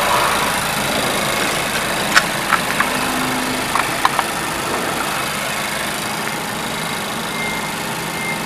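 Mazda 3's 2.0 L PE inline-four petrol engine idling steadily, with a few light clicks a couple of seconds in.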